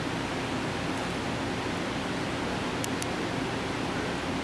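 Steady hiss of background noise with no clear source. About three seconds in, two short, high clicks or jingles come close together.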